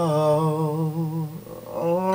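A man's voice singing a wordless held note with a slight waver, fading out about a second and a half in, then a new note rising near the end.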